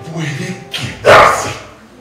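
A stage actor's loud, rough animal-like cry about a second in, after a few low voiced sounds, in an ape-imitating scene from a live musical performance.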